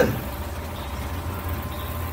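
Steady low hum of room tone in a pause between spoken phrases, with a faint steady high tone above it.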